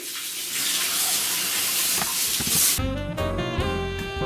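Kitchen tap running steadily into a sink as juicer parts are rinsed under it. Near the end the water cuts off abruptly and background music begins.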